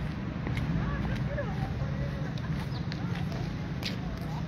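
Steady low street-traffic hum with faint, indistinct voices in the distance, a few light clicks, and one sharp click just before the end.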